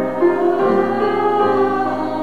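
Choir singing a hymn in sustained, held notes that change pitch a couple of times.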